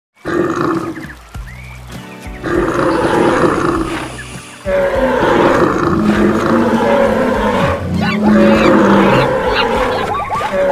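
Animal sound effects, roars and other animal calls, layered over background music. The mix grows louder and fuller about halfway through.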